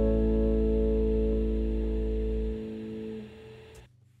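The song's final chord ringing out on acoustic guitar over a deep bass note, fading. The bass stops about two and a half seconds in, and the rest dies away to silence just before the end, closing with a faint click.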